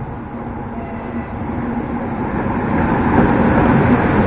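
EP20 dual-system electric passenger locomotive pulling a train into a station at low speed. Its running and wheel noise grows steadily louder as it approaches and draws level, over a faint steady low hum.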